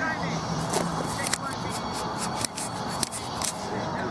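Indistinct shouts and chatter of players on a seven-a-side football pitch, with a run of sharp clicks through the middle.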